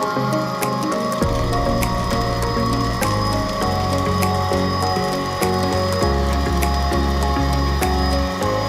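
Homemade bottle vacuum cleaner's small DC motor and fan running, with a rapid mechanical rattle as paper scraps are sucked in, over background music.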